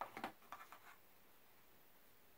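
A plastic VHS clamshell case being handled and slid across a surface: a few short scraping rustles in the first second, then quiet.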